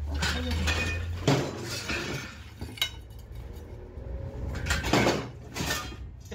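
Pieces of small scrap iron clanking and clinking together as they are handled and dropped, with sharper clanks about a second in and again near five seconds in.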